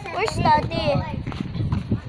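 A child's high-pitched voice calling out without clear words, its pitch sliding up and down.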